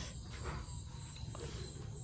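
Faint insect chirping, typical of crickets: a steady, evenly pulsing high trill over a low background hum.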